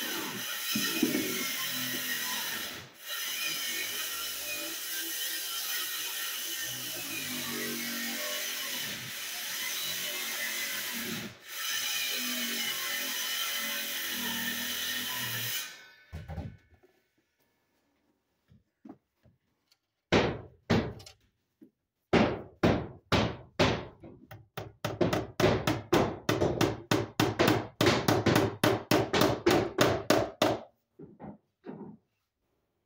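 A steady rasping noise that cuts off abruptly about halfway through. After a short quiet come hammer blows on wood, a few single strikes at first, then a fast run of about four a second.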